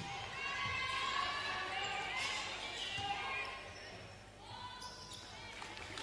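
Live court sound of a basketball game in a hardwood-floored gym: a basketball bouncing on the court and players calling out, faint and echoing in the hall.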